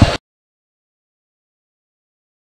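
Arena background noise that cuts off abruptly a fraction of a second in, followed by dead digital silence as the broadcast audio drops out for a break.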